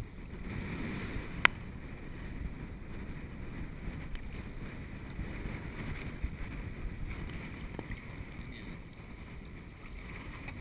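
Small choppy waves lapping and sloshing around a camera held at the sea surface, with wind noise on the microphone. A single sharp click about one and a half seconds in.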